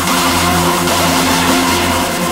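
Raw hardstyle electronic dance music, loud and continuous, with a dense sustained synth sound over a steady bass.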